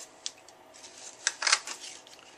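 Handheld 1-inch paper circle punch clicking as it is pressed through patterned designer paper: a faint click, then a louder pair of clicks after about a second as a circle is punched out.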